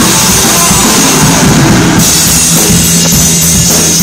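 Live rock band playing very loud, with the drum kit to the fore, recorded on a phone. A wash of high hiss builds and cuts off sharply about halfway through, then regular drum hits carry on.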